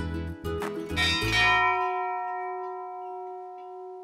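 Background music: short notes over a bass line, ending about a second and a half in on a long held chord that slowly fades.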